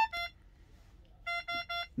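Magnamed Oxymag ventilator's alarm beeping: a short higher beep at the start and another just after, then three evenly spaced beeps about a quarter second apart in the second half. The beeps go with a high-volume alarm: the measured minute volume is above its set limit.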